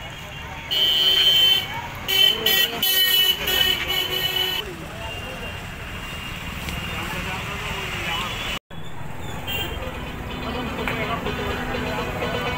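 A vehicle horn sounding: one blast of about a second near the start, then a quick string of short blasts, over steady street noise and chatter.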